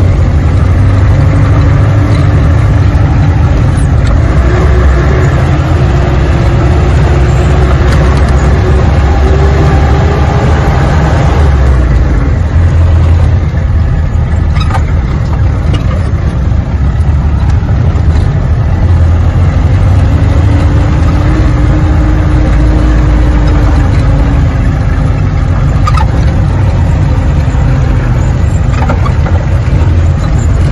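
A 4×4 jeep's engine runs steadily under load, heard from inside the cab as it drives along a rough dirt track. Its pitch climbs for several seconds and drops about midway, with a few brief knocks and rattles from the bumpy ride.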